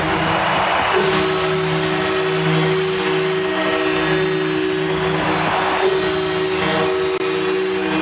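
Hockey arena sound just after a home goal: crowd noise with steady sustained music tones held over it.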